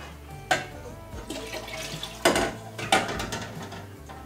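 Vinegar being poured from a glass measuring cup into a stainless steel stockpot, with a few sharp clinks of glass and metal, the loudest about half a second, two and a quarter and three seconds in.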